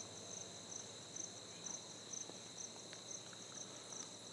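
Faint crickets chirping in the background: a steady high trill with a pulsing chirp above it, repeating a few times a second, and a few soft ticks.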